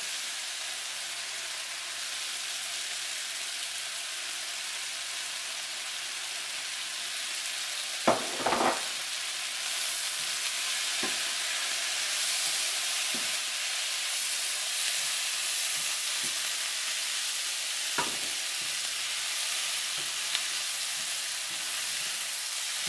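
Stir-fry vegetables in sauce sizzling in a frying pan, a steady hiss that grows a little louder about halfway through. A spatula knocks against the pan a few times in the second half.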